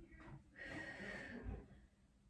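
A woman's breathy exhale under the effort of a held glute bridge, starting about half a second in and lasting nearly a second, followed by a soft low thump.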